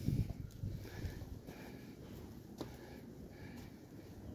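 Quiet outdoor background noise with faint rustling, and a single small click about two and a half seconds in.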